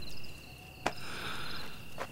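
Crickets chirping steadily in a high, thin tone, with a single sharp click a little under a second in.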